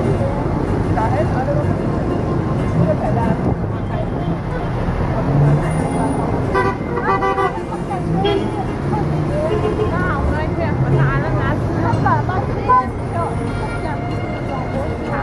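Dense street traffic with cars running, and voices of people walking close by. A car horn sounds once for about a second, a little past halfway.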